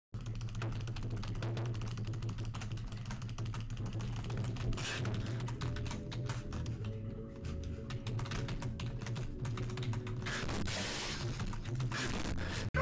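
Fast, continuous computer keyboard typing, the key clicks packed closely together, with music underneath.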